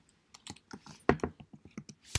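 Typing on a computer keyboard: a quick, irregular run of keystrokes that starts a little way in.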